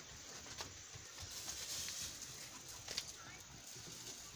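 A few faint, irregular knocks of a mare's hooves on dry ground as she trots away, the loudest about three seconds in, over a light outdoor hiss.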